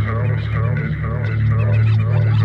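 Experimental electronic music: a steady low bass drone under a dense layer of short, gliding, honk-like calls, repeating several times a second, in the manner of a looped field-recording or voice sample.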